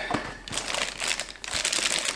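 Clear plastic bag crinkling as a small guitar amp wrapped in it is lifted out of its box and handled, with a few light ticks in the rustle.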